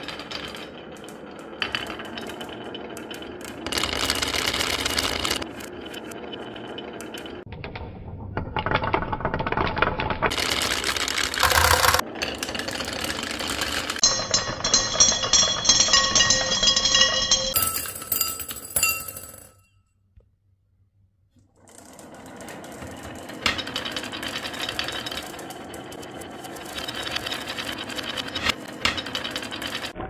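Many glass marbles rolling and clacking down a wooden marble run in a continuous rattle of rapid clicks. The sound comes in several stretches that change abruptly, with a brief silent break about two-thirds of the way through.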